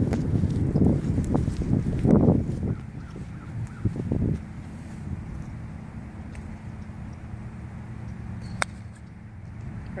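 A single sharp click of a golf iron striking a ball off range turf, near the end. Before it, low rumbling and rustling noise on the microphone for the first few seconds.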